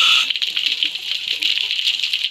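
Underwater rush of a scuba diver's exhaled regulator bubbles. It eases off shortly after the start into a softer, crackly hiss.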